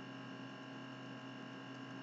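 Steady electrical hum with several faint, even whining tones over light hiss: the background noise of the recording, with nothing else happening.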